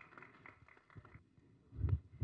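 A quiet hall with faint scattered ticks, then a short, low, muffled thump near the end.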